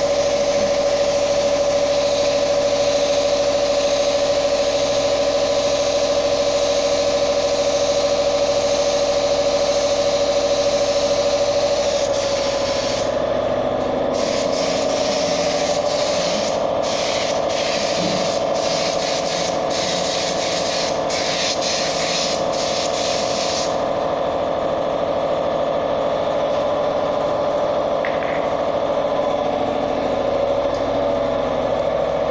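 Paint spray gun hissing as it sprays lacquer onto a speaker box: steady for about the first twelve seconds, then broken into short bursts by quick trigger releases, and stopping about 24 seconds in. A steady motor hum runs underneath throughout.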